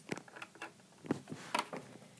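Light, scattered clicks and taps of plastic toy figures being handled against a plastic toy kitchen set, a few small knocks about half a second apart.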